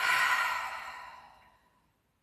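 A woman's sigh: one long breathy exhale that starts sharply and fades away over about a second and a half.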